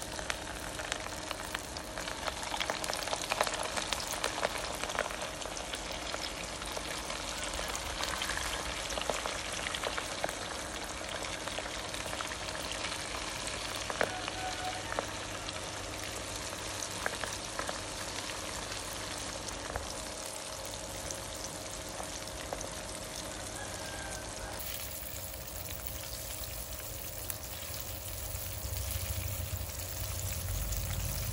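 Batter-coated salmon belly strips deep-frying in hot oil in a pan: a steady sizzle full of small crackles and pops.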